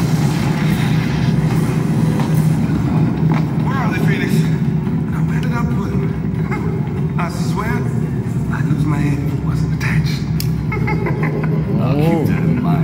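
Film soundtrack heard through room speakers: a steady low rumble runs throughout, with a man's voice breaking in several times over it.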